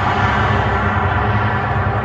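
Recorded concert-intro soundscape over an arena PA: a ringing, many-toned hit that swells right at the start and slowly fades, over a steady low rumble.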